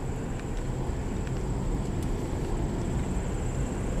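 Car driving slowly along a gravel road, heard from inside the cabin: a steady low rumble of tyres and engine.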